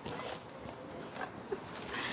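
Scratchy rubbing and rustling close to a wired earphone microphone as its cable brushes against clothing and a hand, in short uneven scrapes.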